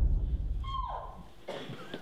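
The tail of a deep boom sound effect dying away, with a short tone that falls in pitch about a second in. Only faint sound is left near the end.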